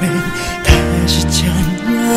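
A male-vocal pop ballad: a man sings a wavering, vibrato line over sustained bass notes, with a drum hit about two-thirds of a second in.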